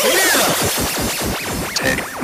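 Electronic techno track in a stretch without the deep bass, its synth tones sweeping up and down in pitch.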